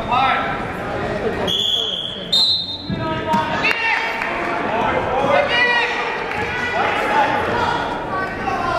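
Referee's whistle, one high blast of about a second, stepping up in pitch partway through, starting the wrestling action from the referee's position. Spectators and coaches shout over it.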